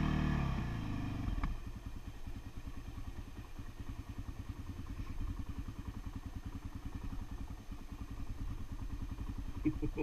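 Off-road vehicle engine easing off from higher revs in the first second or so, then running at low revs with a steady, even beat.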